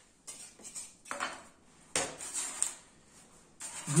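Metal craft tools and a steel ruler clinking and knocking on the work table as foam-board cut-outs are handled: a few separate short knocks and clicks.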